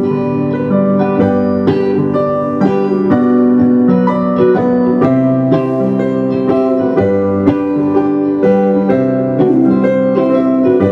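Stage keyboard playing in a piano voice: a passage of chords and melody notes struck in a steady rhythm.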